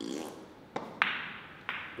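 Pool shot: the cue tip striking the cue ball and billiard balls clicking together, three sharp clicks within about a second, the loudest about a second in with a short ringing tail.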